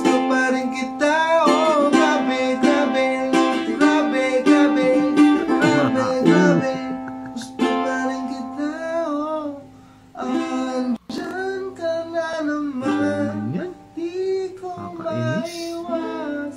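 A man singing a pop ballad cover while strumming a ukulele, his held notes wavering. The singing, from a medley that a listener rates as often flat, dips and cuts out for an instant about eleven seconds in.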